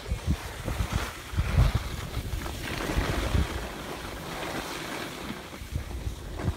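Wind rumbling over the microphone of a camera carried by a skier going downhill, over a steady hiss of skis sliding on snow.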